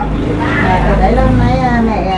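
A person's voice speaking, over a steady low rumble.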